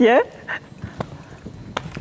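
A voice finishes a short, rising phrase at the very start, then quiet studio room tone with a few faint taps.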